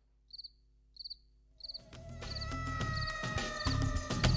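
A cricket chirping in short, evenly spaced chirps, roughly one every half second or so. About two seconds in, soft sustained background music fades in and grows louder, and the chirps carry on beneath it.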